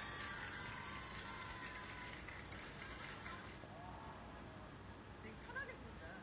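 Faint voices in the background over a low, steady room hum.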